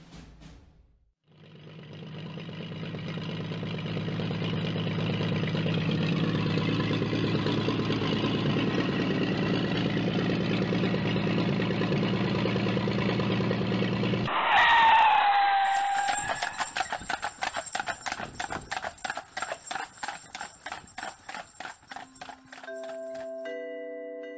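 A steady noisy rumble for about thirteen seconds, then a horse whinnies once, falling in pitch, followed by an even clip-clop of hooves. A few held musical notes come in near the end.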